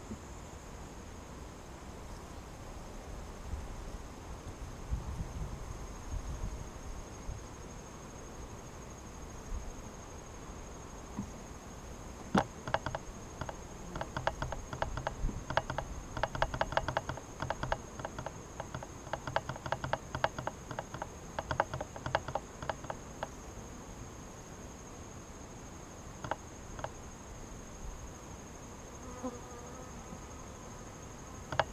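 Honeybees buzzing around an open hive during an inspection. From about twelve to twenty-three seconds in, a louder, stuttering buzz comes and goes in quick broken bursts, with a few more near the end.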